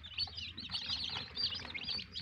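A brooder full of local-breed chicken chicks peeping continuously, many high cheeps overlapping one another.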